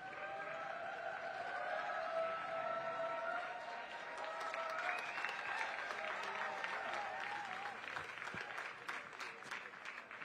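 Ringside audience applauding, with raised voices over it. Separate sharp claps stand out toward the end.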